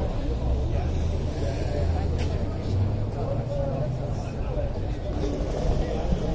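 A vehicle engine running at a steady low idle, under the chatter of a crowd of voices.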